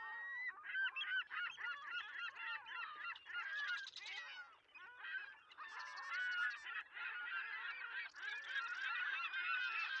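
A flock of birds calling, with many overlapping calls crowding one another continuously.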